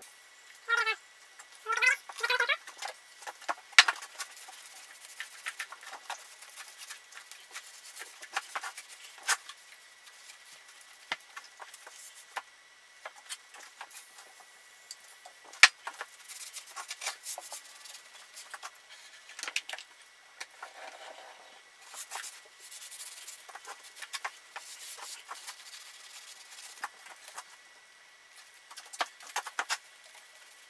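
A mini milling machine being cleaned by hand: a rag rubbed and wiped over its metal table, with a few squeaks about one to two and a half seconds in, then scattered light clicks and knocks of handling and short hisses of an aerosol cleaner spray.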